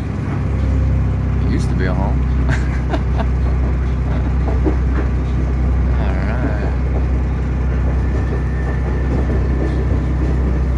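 A diesel railcar in motion, heard from inside the passenger car: a steady low engine and running hum that grows about half a second in, with rail clicks between about one and three seconds. About six seconds in, a level-crossing bell rings briefly as the train passes the crossing.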